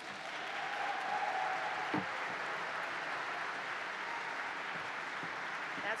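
An audience applauding in a boomy hall, swelling at the start and then steady. There is a single knock about two seconds in.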